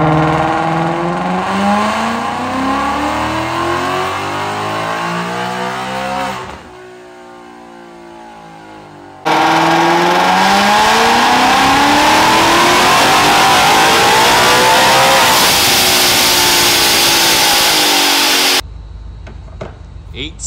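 Supercharged 2020 Mustang GT's V8 at full throttle on a chassis dyno, its pitch climbing steadily as it pulls up through the revs. About six seconds in it drops back and winds down. Then, louder, it climbs again to a loud top-end rush that cuts off abruptly near the end.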